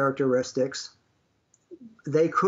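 Speech only: a man talking, breaking off about a second in for a short pause before speaking again.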